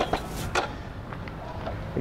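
A few sharp metal clicks and a short clatter in the first half-second as an adjustable weight bench's backrest is raised upright.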